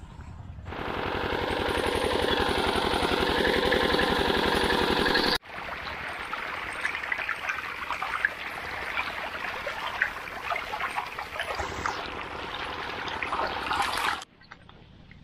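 An irrigation pump engine running with a fast, even beat for about five seconds, cut off suddenly; then pumped water gushing and splashing out into a field channel.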